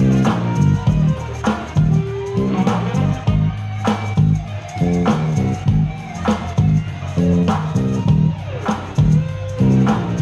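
Live band playing, led by an electric guitar solo with bending notes over bass guitar and a steady beat.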